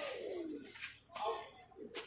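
A man's single drawn-out 'ooh' call, falling in pitch, as a badminton rally ends, followed by a few brief voices and a sharp tap near the end.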